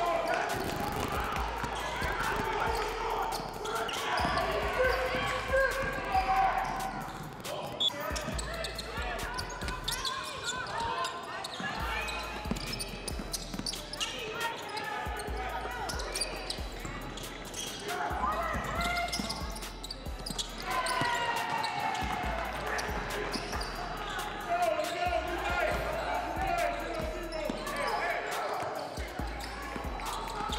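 A basketball being dribbled and bouncing on a hardwood gym floor during play, with several indistinct voices of players and spectators calling out throughout.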